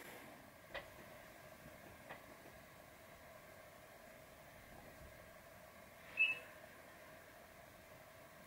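Quiet room tone with a faint steady hum, two faint clicks in the first couple of seconds, and one brief high squeak about six seconds in.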